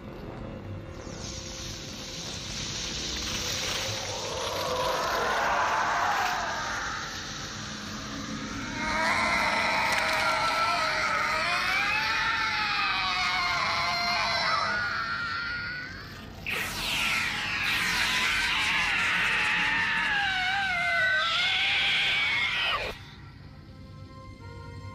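Science-fiction film sound effects: a hissing energy-weapon beam and a creature's wavering, warbling shrieks that rise and fall in long stretches over a music score, cutting off suddenly near the end.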